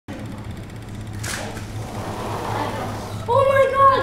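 A child's high-pitched, drawn-out exclamation of "oh" near the end, over a steady low hum and faint background noise, with a brief sharp sound about a second in.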